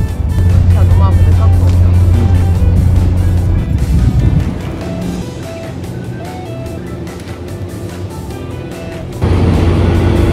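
Background music over a loud, steady low rumble of the car ferry's engine. The rumble eases to a lower level about four seconds in and comes back loud near the end.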